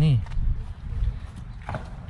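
Footsteps on pavement, a few faint steps under a low rumble, while a word is spoken at the start.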